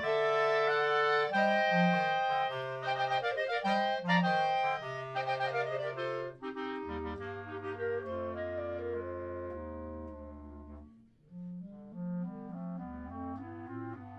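Clarinet quartet playing a milonga: held chords and quick running lines over low notes. The sound thins out to a brief pause about eleven seconds in, then a new rhythmic passage starts.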